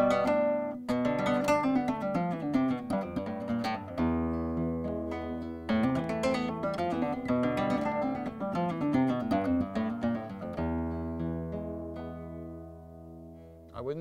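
Flamenco guitar played in a flowing arpeggio with the thumb alone, picking notes across the strings over deep bass notes. The final chord rings on and fades away over the last few seconds.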